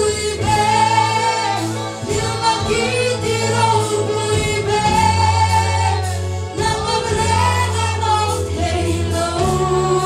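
Two women singing a gospel worship song through microphones and a PA, with a live band of keyboard and drums playing along.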